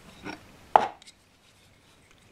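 A hand file picked up and knocked against the workbench: a soft click, then a single sharp knock a little under a second in.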